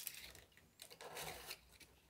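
Faint rustling and rubbing of hands on a large cardboard box, with a soft click at the start.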